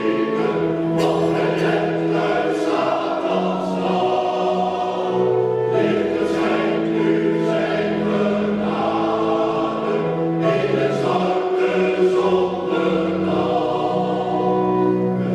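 A men's choir singing in harmony, holding long chords that change every second or two.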